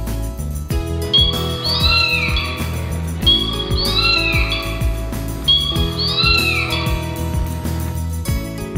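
Background music with a short animal-call sound effect, set as the toy car's horn, sounding three times. Each call rises and falls in pitch.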